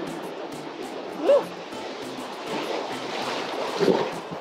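Ocean surf rushing and churning around a swimmer, swelling as a breaking wave's white water reaches her near the end. A brief vocal sound comes about a second in.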